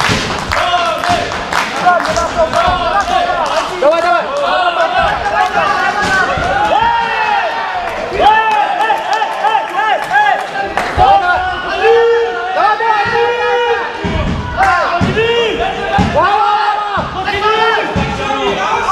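Spectators and coaches shouting over one another in a sports hall at a wrestling bout, the calls thickest in the second half, with scattered thuds.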